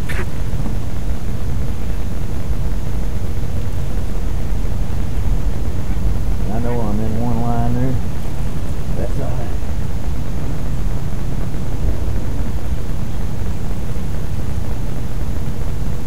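A steady low rumble runs throughout. About seven seconds in, a man gives a short wordless vocal sound.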